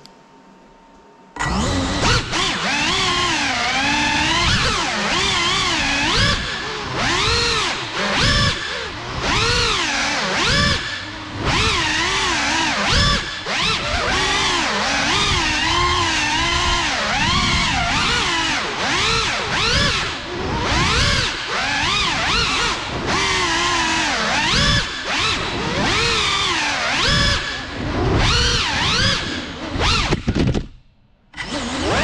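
Electric motors of a 6S-powered Cinelog 35 ducted FPV cinewhoop spinning up about a second and a half in. The motors then whine continuously, the pitch rising and falling constantly as the throttle is worked through the flight.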